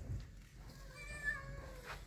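A cat meowing once, a single drawn-out call of about a second that starts halfway through and falls slightly in pitch at the end.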